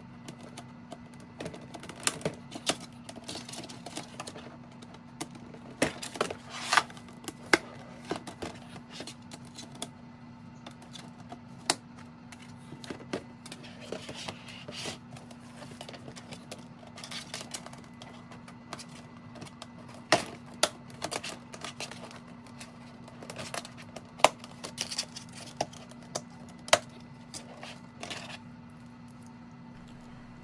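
Snap fasteners clicking shut and the stiff panels of a folding photo lightbox being handled and flexed: irregular sharp clicks and light knocks, over a steady low hum.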